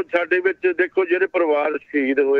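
Speech only: a man talking steadily in Punjabi.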